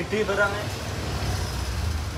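A motorcycle passing in the street, its engine a low rumble that grows louder toward the end, over general street traffic noise.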